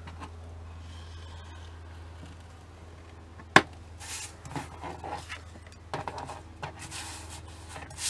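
Paper-craft handling on a plastic scoring board: a single sharp tap about three and a half seconds in, then card stock sliding and being turned over on the board in short rustling bursts. A low steady hum runs underneath.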